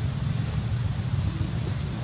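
Low, steady rumble of an engine running, with a fine rapid flutter.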